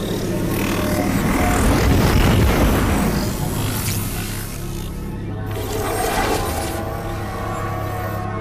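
Dark, ominous film-score music over a steady low drone, swelling to its loudest about two seconds in and then easing off, with smaller swells near the middle and end.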